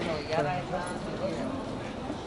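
Passers-by talking on a busy pedestrian street, voices clearest in the first second, with a sharp knock about half a second in.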